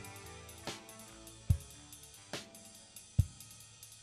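Drum kit played quietly with single, evenly spaced strokes a little under a second apart, the loudest two being low bass-drum thumps with lighter strokes between them, over a faint sustained guitar backing track as the song closes.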